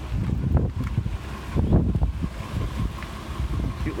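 Wind buffeting the microphone over the steady idle of a 1963 Ford Falcon's 144 cubic-inch inline six.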